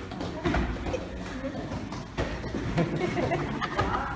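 Taekwondo sparring: a few sharp thuds from kicks striking padded chest protectors and feet landing on foam mats, the strongest about half a second and two seconds in, over indistinct voices.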